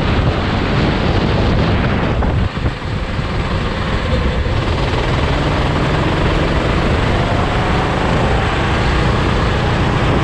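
A Sodi RT8 rental go-kart's engine running at speed, heard together with heavy wind rush on a kart-mounted action camera's microphone. It eases briefly about two and a half seconds in, then picks back up.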